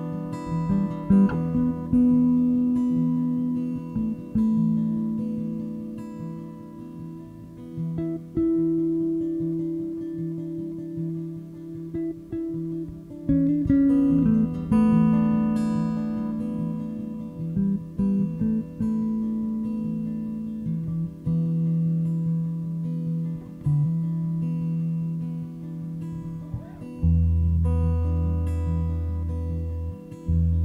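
Live band playing an instrumental passage: acoustic guitar picking over long held notes, with a deep bass note coming in near the end.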